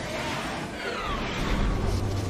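Sci-fi TV soundtrack playing back: a dense rushing roar of spacecraft and meteor-shower effects, with several descending whooshing streaks about halfway through, under the score.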